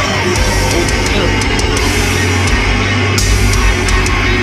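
Loud heavy metal song with dense low guitars and pounding drums, cymbal crashes cutting through now and then.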